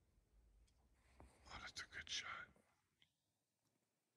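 Near silence, broken by a brief, faint whisper of a person's voice about a second and a half in, then dead quiet.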